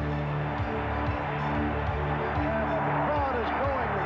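Background music with sustained low held notes.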